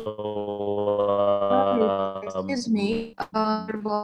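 Distorted video-call audio: a steady buzzing drone with a garbled voice riding over it for about two and a half seconds, then choppy speech. It is the sound of a bad connection that keeps the presenter's voice from coming through clearly.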